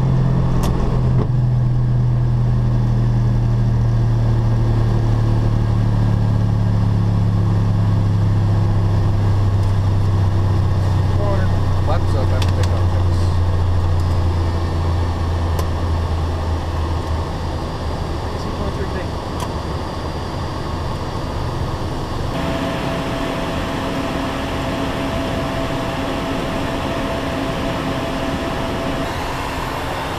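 Cockpit noise of a Hawker 800SP business jet taking off and climbing: its turbofan engines and airflow make a loud, steady drone. A low hum slowly drops in pitch and fades over the first half. About three-quarters of the way in the sound changes and a steady higher tone comes in.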